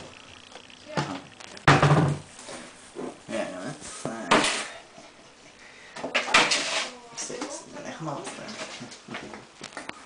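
Clatter and knocks of jars and a kitchen cupboard door being handled, in a few separate sharp strokes, the loudest about two seconds in.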